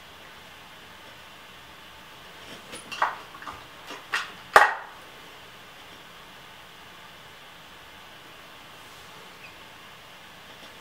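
A handful of short clicks and taps over a faint steady hiss, bunched a little before the middle, the last one the loudest.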